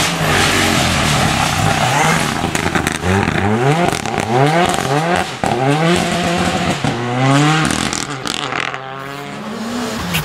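Renault Clio rally car's engine revving hard under acceleration. Its pitch rises several times, each rise broken off at a gear change, and it fades near the end as the car pulls away.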